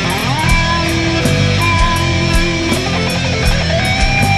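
Instrumental heavy metal: an electric guitar plays a lead line of held notes, sliding up into a high sustained note near the start, over a steady drumbeat and bass.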